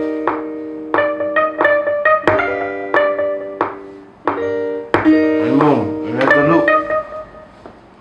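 Software rhythm-guitar instrument played from a MIDI keyboard: a series of struck chords, each held briefly, as a new guitar sound is tried out over the chord progression. A voice joins briefly over the chords about two-thirds of the way through.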